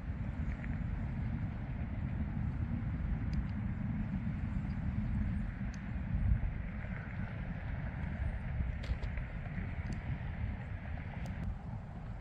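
Strong wind buffeting the microphone: a steady, gusting low rumble, with a few faint clicks.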